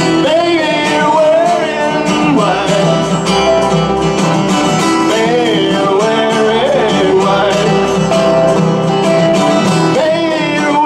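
Live band playing a country-style tune with electric guitar and upright bass, a melody line bending and wavering in pitch over a steady bass.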